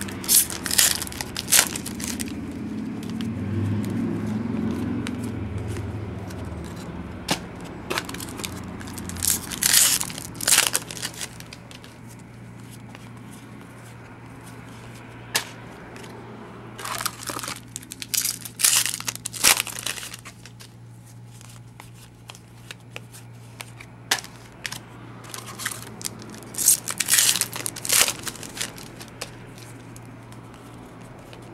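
Foil trading card packs being torn open and crinkled, in several bursts of crackling and tearing, with quieter stretches of cards being handled in between.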